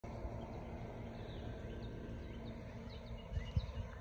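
Outdoor yard ambience: a steady low rumble with faint, scattered bird chirps, and a few low thumps near the end.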